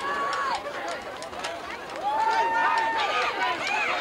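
Football spectators and sideline voices shouting and cheering during a running play, many voices overlapping, with one long drawn-out shout about two seconds in.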